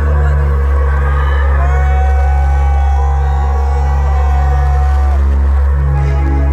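Electronic song intro played loud through a concert PA: a deep sustained bass drone under a low note pulsing in a steady repeating pattern, with a long held higher note above it for a few seconds in the middle.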